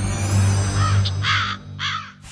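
A low, sustained music drone, with two harsh crow caws about half a second apart in the second half.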